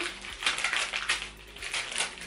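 Wrapping paper crinkling and rustling in the hands as a small gift is unwrapped, in quick irregular crackles.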